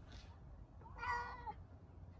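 A domestic cat meowing once, about a second in, a single call of about half a second that drops in pitch at the end: an unhappy cat.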